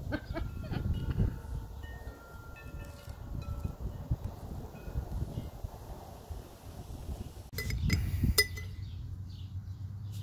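Several short, high chiming tones at different pitches ring out over a low wind rumble. A few sharp clicks and clinks follow about three-quarters of the way through.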